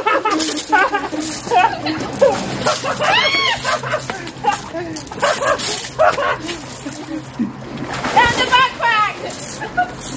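Water splashing and sloshing in a small tarp-lined truck-bed pool while water pistols are squirted. Excited shouts and squeals of playing children and adults ride over it, with a long rising-and-falling yell about three seconds in and another burst of calls near the end.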